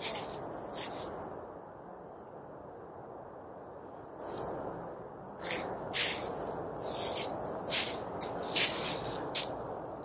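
Footsteps crunching on frost-covered grass: irregular steps, sparse at first and more frequent after about four seconds, over a steady background hiss.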